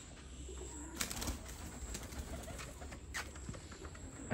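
Domestic pigeons in a wire-mesh loft cooing faintly, with a short flutter of wings about a second in.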